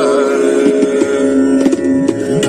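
Hindustani classical accompaniment in raga Basant: a steady drone of held tones with short tabla strokes. The singer's wavering phrase ends just as it begins, leaving the accompaniment on its own.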